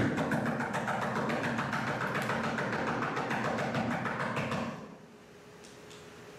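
A dense, rapid clatter of many small clicks and knocks, starting abruptly and dying away about five seconds in.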